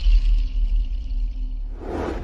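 Tail of a TV station's logo ident jingle: a heavy deep bass rumble dies away as the higher music fades out. A whoosh swells up near the end.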